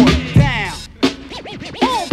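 Hip hop backing track with turntable scratches swooping up and down over the beat, between rapped verses.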